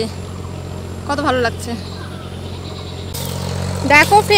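A steady low mechanical hum, like an engine running. A steady hiss joins it about three seconds in.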